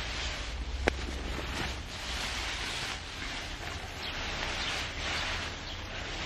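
Wind outdoors: foliage rustling in gusts and wind rumbling on the microphone, with one sharp click about a second in.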